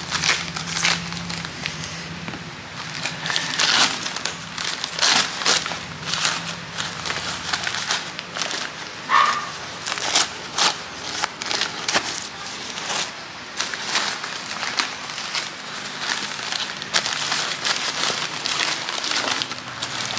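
Newspaper wrapping crumpling and crinkling as it is cut open and pulled off a plant, in dense, irregular crackles.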